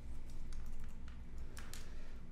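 A few light clicks of computer keys, the strongest pair close together near the end, over a faint low hum.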